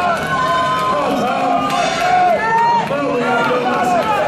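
Spectators' voices shouting and calling out over one another, with crowd chatter in a large hall.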